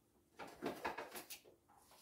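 A few faint short clicks and taps of kitchen things being handled, bunched together just before the middle, with quiet on either side.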